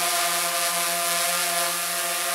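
DJI Phantom 3 Advanced quadcopter hovering close by: the steady, even hum of its four motors and propellers with a hiss over it. It is carrying the weight of a strapped-on flashlight, which makes it a little louder.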